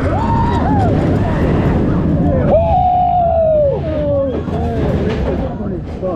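Steel roller coaster train running along the track at speed, a dense rumble with wind noise on the microphone. Over it come long, wavering high-pitched whoops from the riders, one near the start and another about halfway through.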